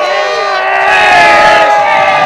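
A crowd shouting and cheering together, many voices held in one loud sustained cheer that swells about halfway through.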